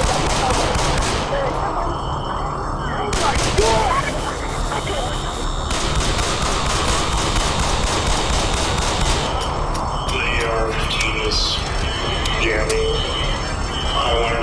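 Rapid AR-15 rifle fire, shot after shot in quick succession, with people screaming. The firing stops about nine seconds in, leaving cries and voices.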